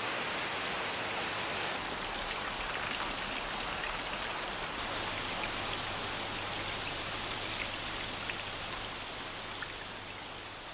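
Steady rain, a dense even hiss of falling rain that eases slightly toward the end.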